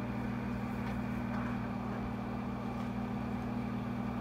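Steady hum of a projector's cooling fan with a constant low electrical drone underneath, no change in pitch or level.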